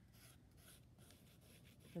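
Faint scratching of a pencil drawing a long straight line on sketchbook paper.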